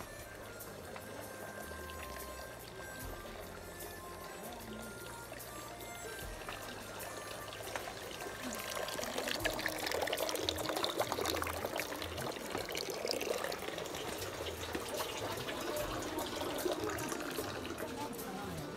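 Running water, trickling and pouring, growing louder about halfway through.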